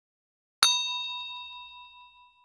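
A single bright bell ding sound effect, struck once about half a second in and ringing out with a slowly fading tone for well over a second: the notification-bell chime of a subscribe-button animation.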